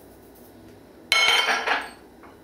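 A sharp clink against a glass mixing bowl about a second in, ringing briefly with a high glassy tone.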